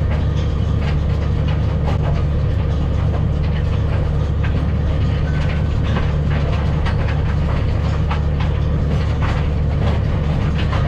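Massey Ferguson tractor engine running steadily under load, heard from inside the cab, with an irregular clatter of knocks as a trailed Kivi Pekka stone picker rakes up stones and lifts them into its hopper.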